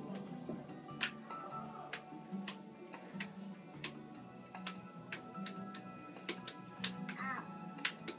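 Sharp clicks of toggle switches on a mock airplane cockpit control panel being flicked, about a dozen at uneven intervals, roughly one every half second, over a steady hum of background music.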